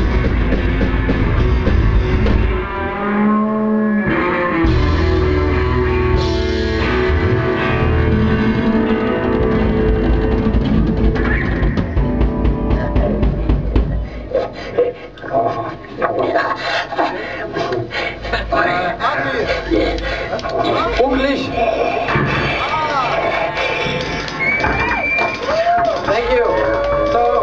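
Live rock band playing loud, with heavy bass and drums and a short break about three seconds in; about fourteen seconds in the full band drops out and voices take over over thinner sound.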